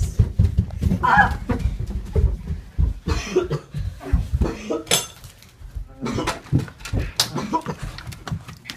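A group of people shuffling and stepping hurriedly while carrying someone, with irregular footfalls, bumps and knocks, short grunts and vocal noises, and a sharp click about five seconds in.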